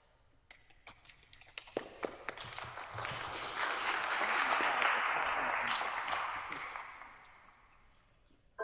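Audience applause: a few scattered claps at first, swelling to full applause in the middle, then dying away near the end.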